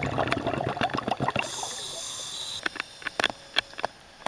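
Underwater recording: crackling, bubbling water noise, then a steady hiss lasting about a second midway, then quieter water with scattered sharp clicks.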